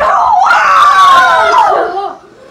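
A child screaming: one long, loud, high scream lasting nearly two seconds.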